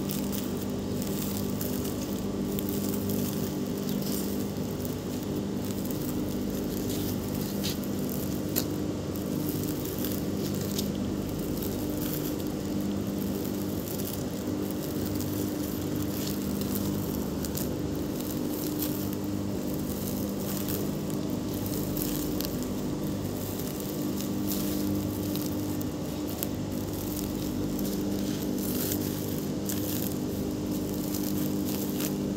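Woven polypropylene sacks rustling and crinkling as they are handled, flipped and stacked, with a few sharper clicks about eight seconds in, over a steady machine hum.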